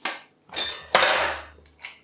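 Kitchen knife cracking an egg's shell: a few sharp taps, the loudest about a second in, then the shell being pulled apart over a bowl.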